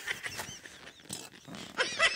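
A quiet lull in the dialogue: faint outdoor background noise with a few soft clicks and brief faint high chirps about half a second in, then a woman's voice starts near the end.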